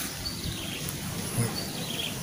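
Steady outdoor background noise with a few faint, short, high chirps.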